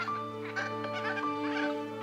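Background music with long held chords, over a quick series of rasping bird calls, about three a second.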